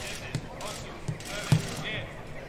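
A football being kicked on grass in a quick passing drill: three short thuds, the loudest about one and a half seconds in, with players' voices calling out near the end.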